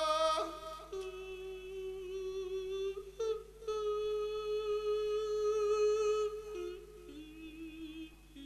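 A Thai Buddhist monk singing a lae, the chanted melody of a sung sermon, into a microphone. The long held notes waver slightly, with a short break about three seconds in. Near the end the voice drops lower and quieter.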